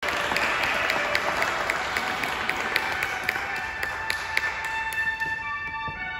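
Audience applause, many hands clapping in a reverberant church, fading away over about five seconds. Near the end, sustained trumpet and organ tones begin as the music starts.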